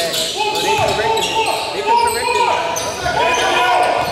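Basketball sneakers squeaking again and again on a hardwood gym floor, with a ball bouncing, in a large echoing gym.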